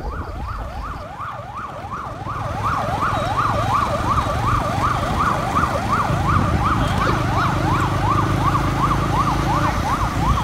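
Emergency vehicle siren yelping: a fast rising wail that repeats about three to four times a second, over a low engine and traffic rumble that grows louder a couple of seconds in.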